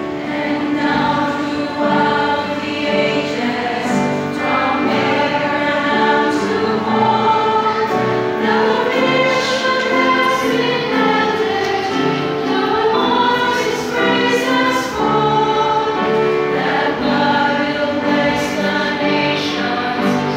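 Women's choir singing a Christian song together, steady and continuous.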